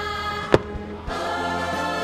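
Choral music with sustained chords, cut by one sharp firework shell burst about half a second in, the loudest sound. After the bang the music thins briefly, then comes back with a new chord.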